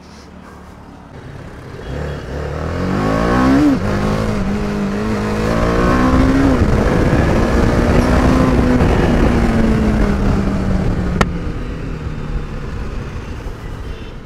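BMW G310RR's single-cylinder engine pulling away and accelerating through the gears: the revs climb, drop at a shift about four seconds in, climb again, then hold fairly steady and slowly ease off near the end. A single sharp click sounds about eleven seconds in.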